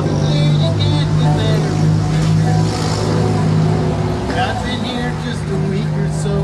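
Live acoustic guitar playing through a small PA in an instrumental gap between sung verses, with a car passing on the street, loudest around the middle, and voices talking over it.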